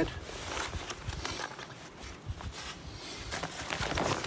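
Irregular rustling and crinkling of a waterproof military poncho as it is pulled down over the head and settled around a crouching body, with wind rumbling on the microphone.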